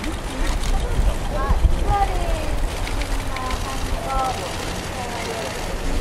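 Quiet, scattered speech over a steady low rumble.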